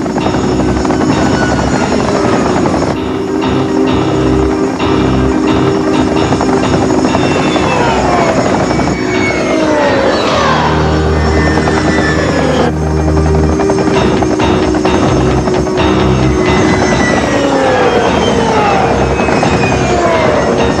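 Cartoon sound effect of a squadron of flying craft: a steady rotor-like drone with repeated falling whistles as the craft swoop down, mixed with background music.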